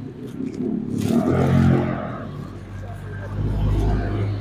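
A motor vehicle engine running on the street, swelling about a second in and rising again to a low rumble near the end.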